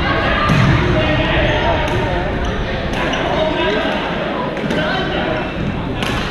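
Echoing sports-hall hubbub of many people talking across badminton courts, broken by scattered sharp clicks of rackets striking shuttlecocks.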